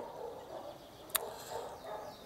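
Faint background noise broken by a single sharp click a little over a second in.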